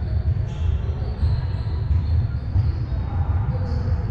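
Indoor soccer in a large sports hall: a steady low rumble, with players' distant voices and the thud of a ball.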